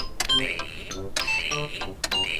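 Cartoon computer keyboard typing: a run of quick clicks mixed with short electronic beeps.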